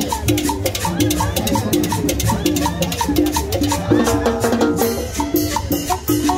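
Live salsa band playing a steady, repeating rhythm on congas and timbales, with a saxophone line over the drums that grows busier about four seconds in.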